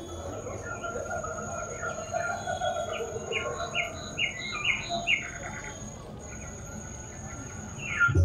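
Birds chirping over a steady, high insect trill like crickets, with a run of about six quick bird notes around the middle.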